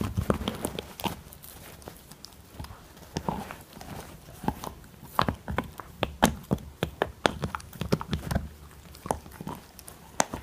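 Husky puppy gnawing a hard chew bone: irregular clicks and scrapes of teeth on the bone, busiest in the first second and again from about five to eight and a half seconds in.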